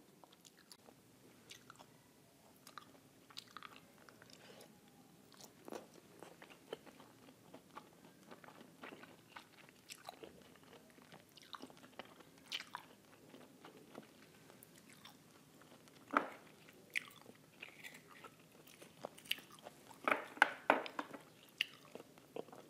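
Close-miked mouth sounds of a woman chewing an oyster: scattered soft wet smacks and clicks. A louder smack comes about sixteen seconds in, and a cluster of louder ones near the end.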